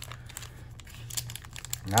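Foil wrapper of a Japanese Pokémon card booster pack crinkling in the hands as it is worked open, a scatter of small crackles.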